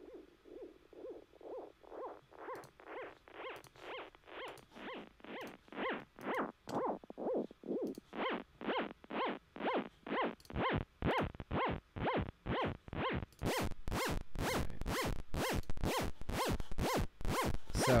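OSCiLLOT modular synth patch playing: detuned square and saw oscillators pitched down several octaves, their pitch bent by an LFO in quarter notes, giving a steady pulse of pitch sweeps about twice a second. The sound grows fuller and brighter as it goes, with more low end from about ten seconds in and a sharp, bright top from about thirteen seconds.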